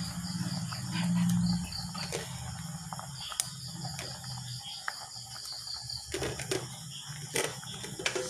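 Insect chirping, a fast even run of short high-pitched pulses that stops about six seconds in, over a low steady hum. A few sharp knocks come near the end.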